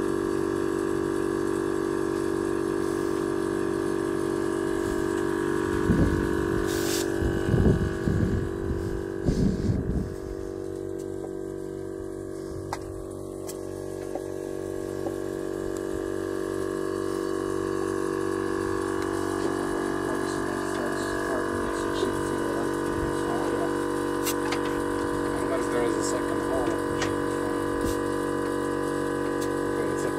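Vehicle-mounted onboard air compressor running steadily with a constant droning hum, pumping air through a coiled hose to inflate a repaired side-by-side tire.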